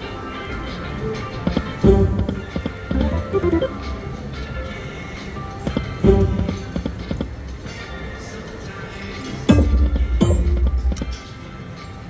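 Poker machine's game music and sound effects while the reels spin, with a new spin starting about two, six and nine and a half seconds in, each beginning with a sudden loud hit.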